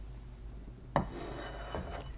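Cookies being handled: a knock about a second in, then a short rubbing scrape lasting just under a second, as they are set down and moved across a surface.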